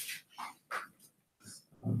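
Faint, broken-up fragments of voices, then a short voiced "um" from the presenter near the end.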